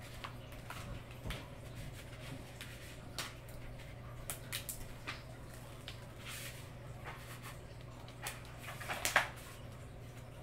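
Excess adhesive vinyl being peeled off its paper backing while weeding, giving soft crinkles and brief crackles at irregular moments, with a louder cluster of crackles near nine seconds.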